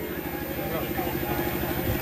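A single steady note held on the accompanying instrument through the stage PA, with a faint low hum beneath it.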